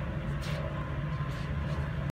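Steady low hum of an indoor range hall, with a few faint knocks.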